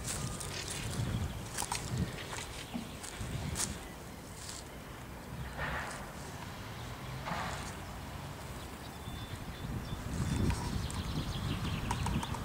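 Footsteps of the person carrying the camera, walking steadily, with scattered sharp clicks and scuffs and a low rumble that grows louder near the end.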